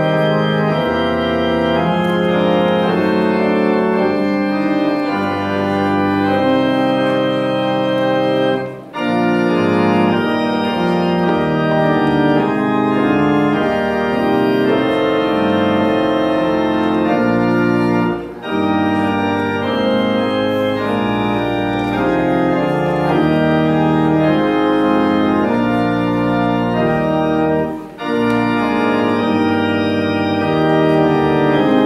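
Pipe organ playing slow sustained chords, pausing briefly between phrases about every nine seconds.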